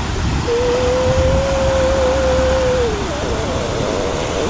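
A woman humming one long, thoughtful 'hmm' at a steady pitch that dips away at the end, over a steady background rush of outdoor noise.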